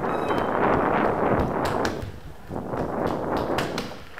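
Running footsteps on a stone floor, with loud rustling noise on the camera's microphone as the runner sprints, and several sharp footfalls in the second half.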